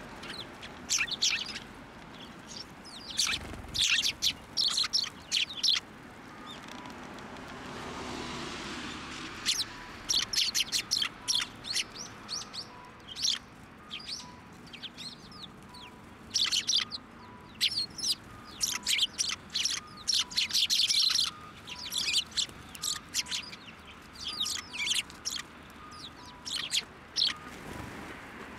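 Eurasian tree sparrows chirping: quick clusters of short, sharp calls that come in bursts throughout, with brief lulls between.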